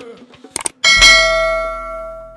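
Two quick mouse-click sound effects, then a bright bell ding that rings on and fades away: the notification-bell chime of a YouTube subscribe-button animation.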